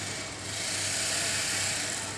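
Steady background noise, mostly a hiss over a faint low hum, swelling slightly in the middle, with no speech.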